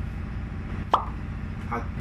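A single sharp mouth click, like a lip smack, about a second in, over a steady low background hum. A short spoken syllable comes near the end.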